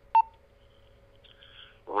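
A Motorola MOTOTRBO R7 portable radio gives one short beep with a click as its programmed side button is pressed to replay the last received call. A faint hiss follows, and near the end the recorded voice starts playing from the radio's speaker.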